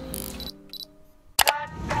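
Background music fades out. About one and a half seconds in, a sharp camera-shutter click sounds as a transition effect.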